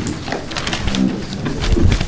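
Papers rustling and shuffling at a meeting table, with a brief low murmur of voices and a low thump on the microphone near the end.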